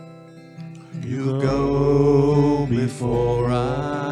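Live worship song: a man sings with acoustic guitar and electric bass. Soft guitar notes open it, and the voice comes in about a second in, with the bass joining just after. The voice pauses briefly near the three-second mark and then sings a second phrase.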